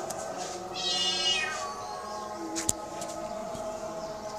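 A kitten meows once, a high-pitched call a little under a second long that drops in pitch at the end. A single sharp click follows about a second later.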